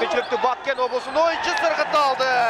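Speech only: a sports commentator talking fast without a break.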